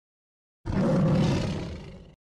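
A tiger roar sound effect that starts suddenly about two-thirds of a second in and fades away over about a second and a half.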